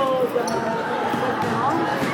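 Background chatter of boys' voices in a school gym, with one sharp knock about half a second in.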